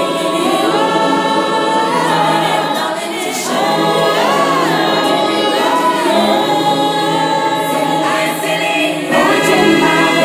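Layered wordless singing in a choir-like texture, with several held vocal notes that glide between pitches.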